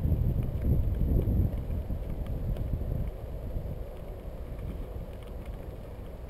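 Rumbling wind on a bicycle-mounted camera microphone while the bike rolls over a wet gravel towpath, with faint crunches from the tyres. The rumble is loudest for the first second or two, then drops to a quieter steady level.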